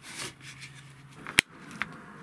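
Quiet handling of small objects on a table, with one sharp click about a second and a half in and a fainter click shortly after.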